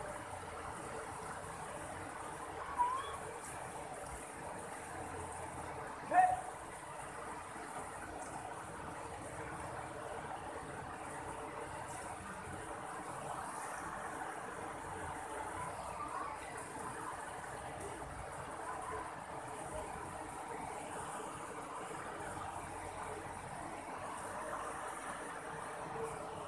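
Steady rush of river water running over rocks in shallow rapids. A few short rising calls sound over it, the loudest about six seconds in.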